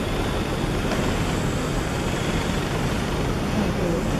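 Steady rushing background noise, even from low to high pitch and unchanging in level, with a faint tick about a second in.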